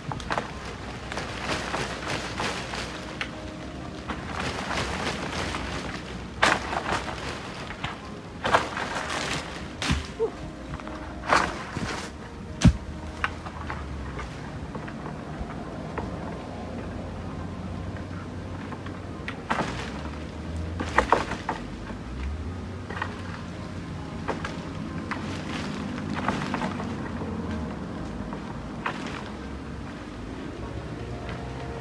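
Long bamboo pole knocking against a coconut palm's nuts and stems, about a dozen sharp knocks and thuds at uneven intervals, the loudest in the first half, amid rustling of the palm fronds.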